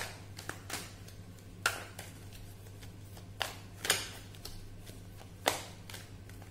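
Tarot cards being handled just out of view: about seven sharp clicks and taps at uneven intervals, the loudest right at the start, over a steady low hum.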